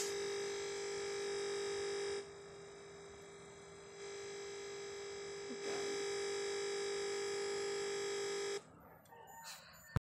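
Steady electronic buzz from a PC crashed to a Windows blue screen, the kind of stuck, looping sound a computer's audio makes during such a crash; it drops in level about two seconds in, comes back near the middle, and cuts off suddenly near the end as the PC restarts.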